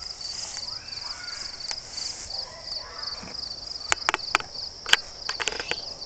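Insects chirping steadily in a fast, even, high-pitched pulse. A quick run of sharp clicks and snaps comes about four to five and a half seconds in.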